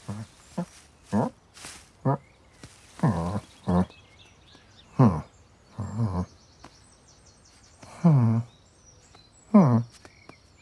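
Cartoon cat vocalizations voiced by a person: a string of about nine short meows and mews, most sliding down in pitch, roughly one a second, with a couple of brief hissy rustles between them.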